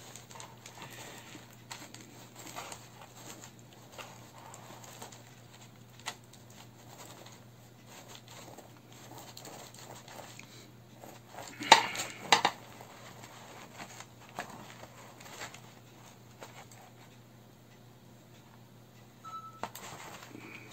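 A sharp knife slicing through a Vietnamese baguette bun on a board: faint crackling and scraping of the crust, with a few loud sharp knocks of the knife or utensils against the board about twelve seconds in.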